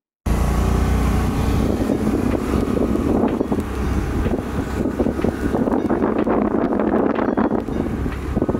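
Motor scooter running as it rides along a street, with wind buffeting the microphone. The sound begins abruptly after a brief silent gap at the start.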